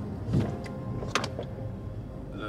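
Steady road and engine rumble inside a moving car's cabin, with a couple of brief sharp clicks, one about half a second in and one just after a second in.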